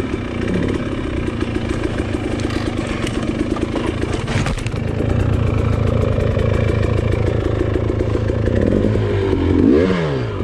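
KTM two-stroke dirt bike engine running at low revs with small throttle changes over rocky trail. There is a clattering knock about four seconds in, and a quick rev that rises and falls near the end.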